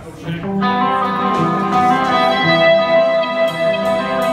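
A live band starts playing: electric guitars ring out with held, overlapping notes, beginning about a third of a second in. Light, sharp cymbal ticks join near the end.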